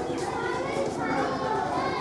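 Many children's voices talking and calling out at once, a steady babble with no single voice standing out.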